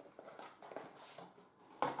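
Faint handling of product packaging: scattered light clicks and rustles as a white plastic tray and a small cardboard box are lifted out of a carton.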